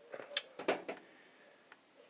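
About four short clicks or taps in quick succession within the first second.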